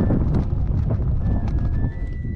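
Strong wind buffeting the microphone as a steady low rumble, with the irregular flapping and snapping of a flag in the wind.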